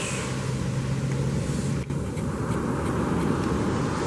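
Steady rush of surf and wind on the beach, with a low engine hum underneath that stops about halfway through. A single click comes just before the hum stops.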